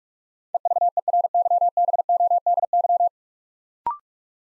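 Morse code at 45 words per minute: a single steady tone keyed rapidly on and off for about two and a half seconds, sending the whole word 'EVERYBODY'. Just before the end comes a very short, higher two-note courtesy tone marking the end of the word.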